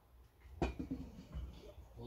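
A sharp knock about half a second in, then a lower thud and light handling noise, as a round wooden board is set down as a lid over a steel cooking pot.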